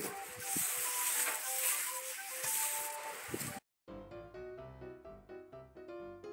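Background music with piano-like notes. For the first three and a half seconds it plays under a steady hiss from the live sound; after a brief dropout it carries on alone and clearer.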